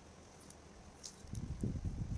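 Handling sounds from taping flower stems with clear cellophane tape: a few faint crisp crackles about a second in, then an irregular run of dull low thumps and rubbing near the end.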